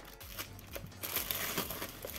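Thin plastic shrink-wrap crinkling as it is pulled off a paperback manga volume, faint, getting louder and more crackly about a second in.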